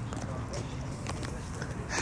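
Handling noise from a phone camera being swung around: a few faint taps and knocks over a low steady hum.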